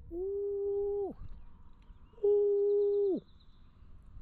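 A man hooting twice through pursed lips, owl-like: two long steady hoots of about a second each, the pitch dropping off at the end of each.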